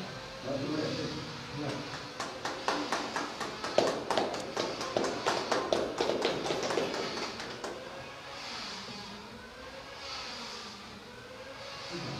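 Scattered hand claps from a small group of people, a brief round of a few seconds, with faint voices murmuring.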